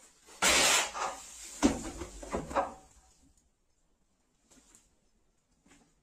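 Old bone-dry wooden shelf frame being smashed apart: a loud crash of wood about half a second in, then cracking and creaking with a sharp knock, all over within about three seconds.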